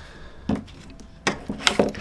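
A few sharp knocks and clicks of the UE Megaboom speaker's hard plastic housing being handled and set against a table: one about half a second in, then several close together in the second half.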